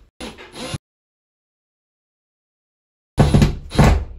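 Ryobi ONE+ cordless drill driving screws through a plastic bracket into wall plugs. It runs briefly near the start, falls dead silent for about two seconds, then gives two short loud bursts near the end.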